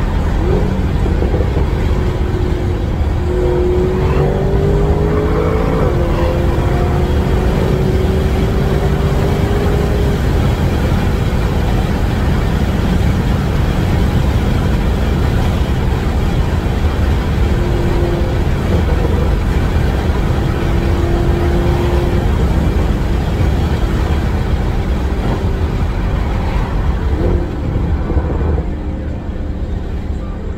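Tuned Audi S6 heard from inside the cabin while driving: a steady low engine and road rumble, with the engine note rising gently twice as it picks up speed, and a slight drop in level near the end.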